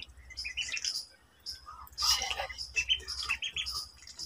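Ducklings peeping: runs of short, high chirps repeated in quick succession.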